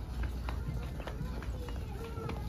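Plastic shopping cart rolling over a hard store floor: a steady low wheel rumble with irregular clicks and knocks about twice a second.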